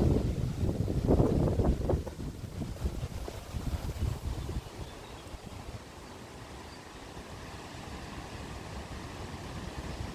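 Wind buffeting the microphone, gusting hardest in the first two seconds, then settling to a quieter, steady low rumble.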